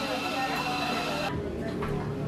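Café ambience: indistinct chatter over a steady mechanical whir from the coffee counter. The sound changes abruptly just past halfway.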